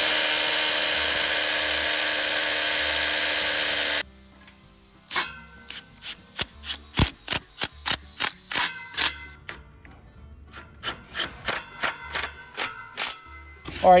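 Hilti rotary hammer drilling into a concrete block wall for about four seconds, a steady loud noise that cuts off suddenly. Then background music with a quick, even percussive beat of about three hits a second.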